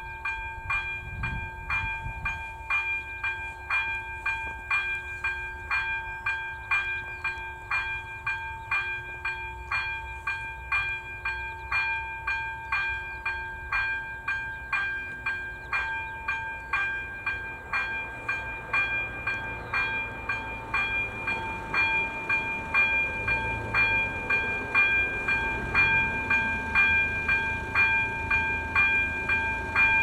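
AŽD ZV02 electronic level-crossing bell ringing steadily, about two strikes a second, each strike a bright ringing tone. It starts abruptly as the warning lights begin flashing for an approaching train. A low rumble builds underneath in the second half.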